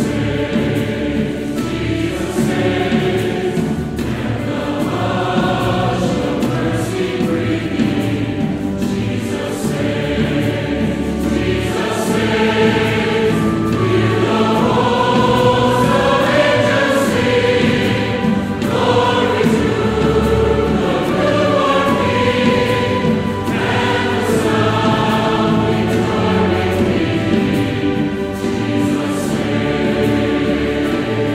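A large mixed choir singing a hymn with full orchestra accompaniment, strings and harp among it. The singing holds long, full chords throughout.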